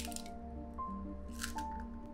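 An egg being broken open over a stainless steel saucepan: wet squishes as the shell halves are pulled apart and the white drips into the pan, once at the start and again about a second and a half in, over soft background music.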